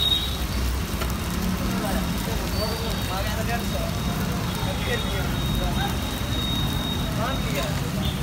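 Steady low roar of a street-stall gas burner under an iron wok of stir-frying noodles, with faint voices and traffic in the background.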